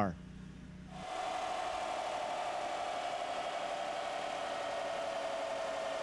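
1999 Ford Super Duty diesel pickup, 7.3-litre Power Stroke V8, running on a chassis dynamometer with its drive wheels spinning the rollers: a steady whine that starts about a second in and eases slightly lower in pitch.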